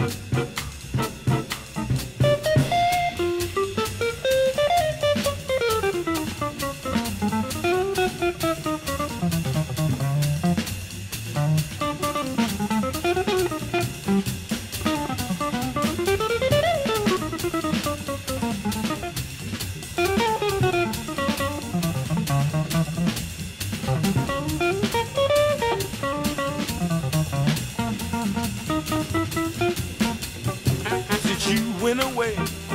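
Jazz guitar solo on a hollow-body electric guitar: quick single-note runs that climb and fall again and again, over a drum kit keeping time.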